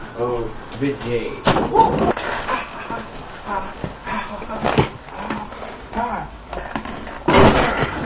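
Young men's voices, shouting and laughing with no clear words, in a small room. Three sharp knocks about a second and a half in, near five seconds, and shortly before the end.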